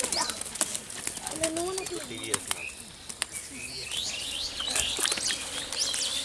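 A freshly caught small fish flopping on dry sandy ground, a string of quick slaps and taps, with birds chirping over it for a while after the middle.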